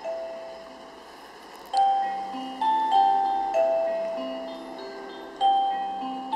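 The Ostrava astronomical clock's chime playing a slow melody of bell-like struck notes, roughly one a second, each ringing on and fading; the tune pauses briefly at the start and picks up again after a second and a half.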